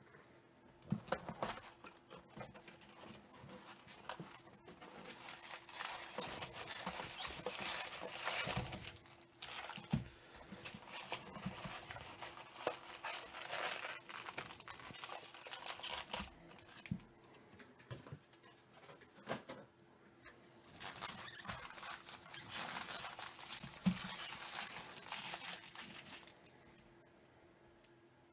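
Foil wrappers of Bowman Draft Super Jumbo card packs crinkling and rustling as the packs are pulled from their cardboard box and set down, in several bursts with sharp taps and clicks among them.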